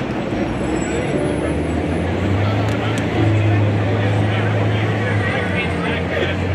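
Busy street noise: a vehicle engine running with a steady low hum that grows louder about two seconds in, over the voices of people nearby.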